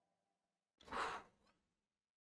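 One short, breathy sigh, a quick exhale about a second in, against near silence.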